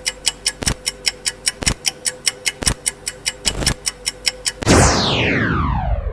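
Quiz countdown timer sound effect: fast even ticking, about four ticks a second with a heavier beat once a second. Near the end a loud tone sweeps down in pitch and fades out as the countdown runs out.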